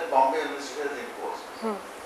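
Speech: a voice talking in short stretches with a pause between them, words the transcript did not catch.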